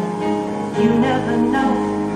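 Live theatre band music with sustained chords and a melodic line, growing a little louder about a second in.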